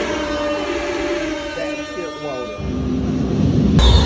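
Live concert music heard from backstage, with held chord tones and a few voices over it. About two and a half seconds in a heavy bass comes in, and just before the end the sound jumps abruptly to the louder, fuller music in the hall.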